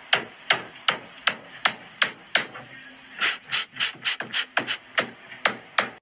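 Renovation work banging on a house wall with a hammer: a steady run of sharp blows, about three a second, with a short pause a little before halfway.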